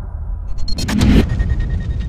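Cinematic intro sound effects: a low rumble with a short, bright whooshing hit about a second in, leaving a faint high ringing tone.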